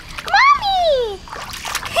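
A high voice calls out with a long falling glide, then a hand splashes the water of a hot tub for the last half second or so.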